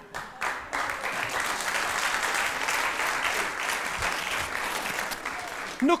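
Studio audience applauding, building up about half a second in and holding steady until a man starts speaking again near the end.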